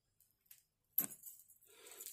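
A brief faint clink and jingle of small metal pieces, like costume jewellery being handled, about a second in, after near silence.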